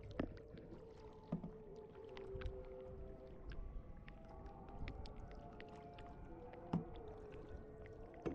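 Faint water lapping and dripping around a kayak on calm water, with many small scattered ticks and a faint hum that holds and shifts in pitch.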